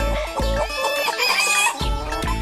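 A hen calling as a hand grabs it, over background music with a bass beat.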